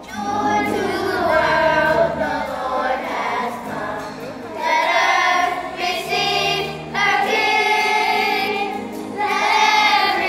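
A children's choir singing together in several sung phrases, each starting strongly, with short dips between them.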